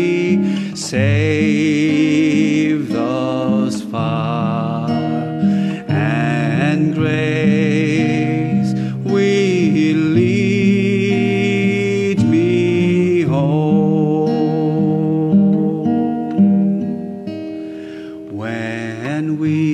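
A man singing a slow song with vibrato while strumming chords on a steel-string acoustic guitar.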